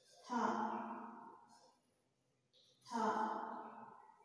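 A woman's voice twice drawing out a long syllable, about two and a half seconds apart, each held on one pitch and fading away: a Hindi letter sounded out slowly as it is taught.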